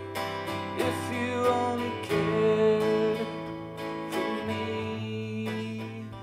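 Acoustic guitar strummed steadily in an instrumental break of a country song, with a second instrument playing a lead line that holds one long note about two seconds in.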